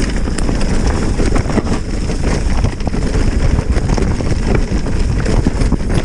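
Mountain bike running fast down a dirt trail strewn with dry leaves: steady tyre noise with many small knocks and rattles as the bike jolts over the rough ground, and wind on the microphone.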